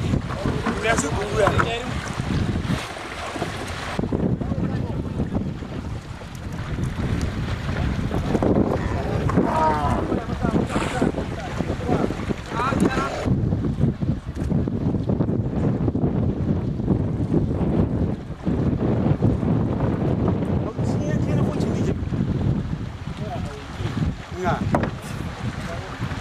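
Water sloshing and splashing as a herd of long-horned cattle swims across a river, under steady wind noise on the microphone, with a few shouted calls from herders, one around nine seconds in.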